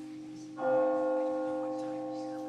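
A bell struck once about half a second in, ringing out and slowly fading over steady held tones.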